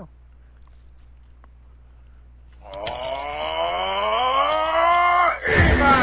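A cartoon voice holds one long drawn-out note for about three seconds, its pitch bending slowly, after a quiet stretch of low hum. Near the end loud heavy guitar theme music cuts in.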